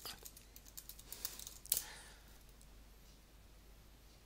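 Faint typing on a computer keyboard: a run of quick keystrokes, ending in one louder key press just under two seconds in.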